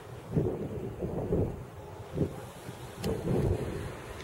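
Wind buffeting the camera microphone in irregular rumbling gusts, two long ones and a short one between them.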